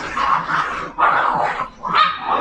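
Puppies vocalizing in a run of short, rough yaps and whines, about four bursts in two seconds.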